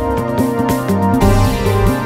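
A keyboard and percussion duo playing: a keyboard sounding a synthesizer voice from an iPad app, with a moving bass line under chords, and percussion hits.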